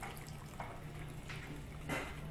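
Martini dribbling from a metal cocktail shaker into a martini glass, with a few short clicks.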